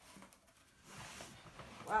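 Faint, soft rustling handling noise that starts about a second in, near the opened cardboard mailer box with its crumpled paper wrap, followed by a short spoken "wow" at the very end.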